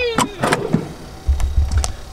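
A camper galley drawer being unlatched and pulled open: a few sharp clicks and knocks, then a short low rumble as it slides out.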